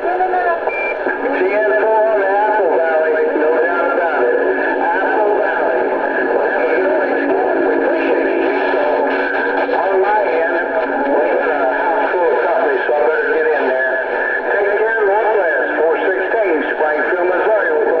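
A distant operator's voice received over AM CB and played through a Cobra 148 GTL ST SoundTracker's speaker: continuous, thin, band-limited radio speech with no let-up.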